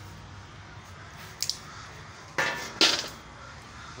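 Metallic clacks from a hand-lever stainless steel cashew deshelling machine being worked: a light click a little after the first second, then two louder clacks about half a second apart past the middle.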